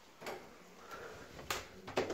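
Toilet cubicle door lock and handle worked by hand, giving a few sharp metal clicks and clacks, the loudest at the end. The lock is broken.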